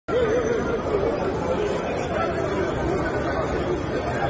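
Crowd chatter: many people talking at once around an arriving convoy, with no single voice standing out.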